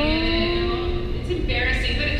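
A voice over a hall's loudspeakers holding one long vowel that slowly rises in pitch for about a second and a half, then breaking into short bits of speech, over steady low background noise from the hall.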